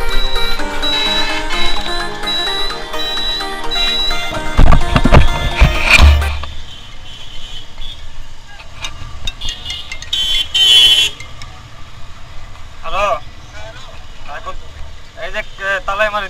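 Background music for about the first six seconds, then a motorcycle on the move: low engine and wind noise on the helmet-less action camera. A vehicle horn honks briefly about ten seconds in, and a voice is heard near the end.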